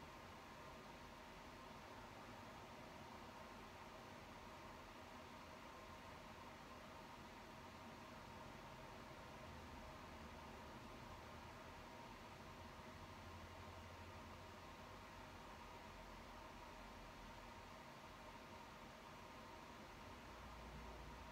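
Near silence: steady room tone with faint recording hiss.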